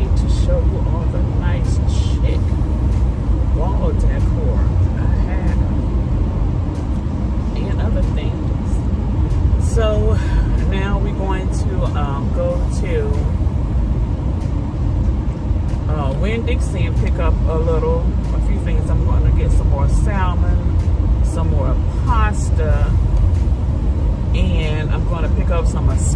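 Steady low road and engine rumble inside a moving car's cabin, with a voice heard briefly now and then.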